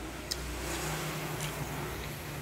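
Low rumble of a road vehicle passing by, swelling a little and then easing, with a couple of light clicks.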